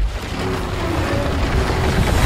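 Action-film sound mix of car engines racing over ice and a dense, rumbling crash of breaking ice, growing slightly louder toward the end.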